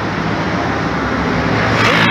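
Street traffic, with a car driving past close by: engine and tyre noise.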